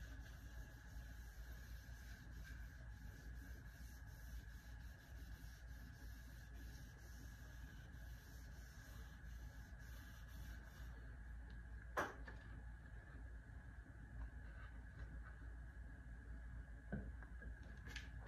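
Very quiet room tone with a faint steady high hum, broken by a single sharp click about twelve seconds in and a softer one near the end.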